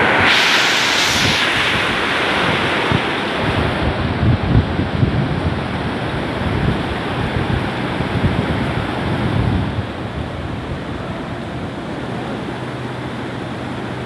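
Heavy hailstorm with rain: a dense, steady roar of hailstones and rain pounding the ground, with gusts buffeting the microphone. It is loudest at the start and eases a little after about ten seconds.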